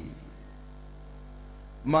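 Steady electrical mains hum, a low buzz with a ladder of even overtones, in a pause between phrases of a man's amplified speech; his voice comes back in near the end.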